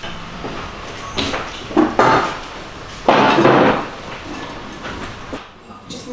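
A few short knocks and rustles from food and dishes being handled on a kitchen counter, the longest and loudest about three seconds in.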